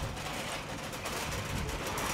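Shopping trolley rolling over tarmac as it is pushed along, a steady rolling rumble.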